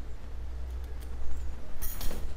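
Light metallic clinks of a set of metal fretboard radius gauges on their ring as the 12-inch gauge is taken off, with a brighter short jingle near the end as the set is put down.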